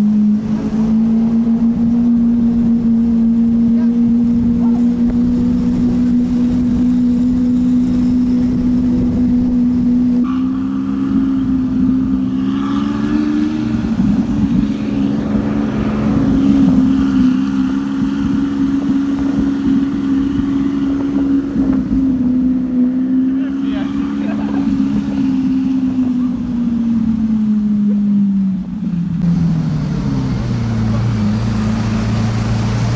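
Lamborghini engine droning steadily at a light cruise, heard from the car itself; near the end its pitch falls away as the car slows.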